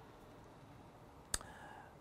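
Quiet room tone broken by a single sharp click a little past halfway.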